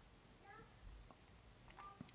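Near silence, broken by faint, distant high cries coming in through a window: short rising calls about half a second in and again near the end.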